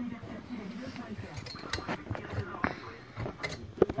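Small clinks and knocks of a glass bottle and metal crown cap being handled and set into a bottle capper, with a sharper knock near the end.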